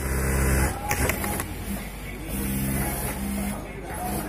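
Industrial lockstitch sewing machine stitching a polo shirt placket in two bursts, its motor running with a steady low hum at the start and again from about two seconds in, with a few sharp ticks around one second in.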